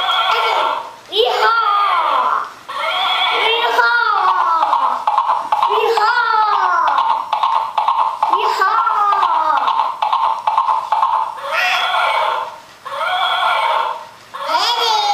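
Plush rocking horse's built-in sound unit playing recorded horse whinnies: a series of falling neighs, one every two to three seconds, over a steady electronic background.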